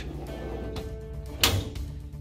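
A steel cabinet drawer on metal runners being pushed shut, closing with a single sharp bang about one and a half seconds in, over background music.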